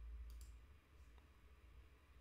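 Near silence: room tone with a low hum and a few faint clicks, the clearest about a third of a second in.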